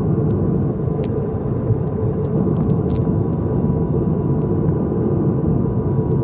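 Steady cabin drone of an ATR 72-600's turboprop engines and propellers in flight, heard from inside the cabin beside the engine nacelle: a loud, even rumble with a thin steady whine above it.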